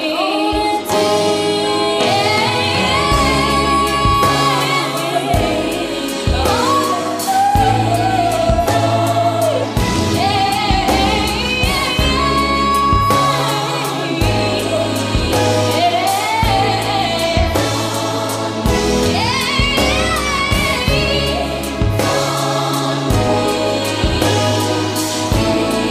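A woman singing a pop song into a microphone over a backing track with a repeating bass line and a beat. She holds several long notes with vibrato.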